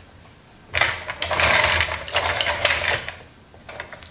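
Rapid run of plastic clicking and rattling from a Transformers Rescue Bots Heatwave toy as its ladder is worked upright. It starts about a second in and lasts about two seconds.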